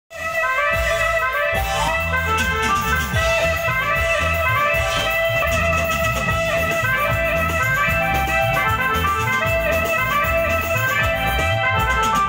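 Live band playing an upbeat instrumental passage: a steady bass-and-drum beat under a bright melody line.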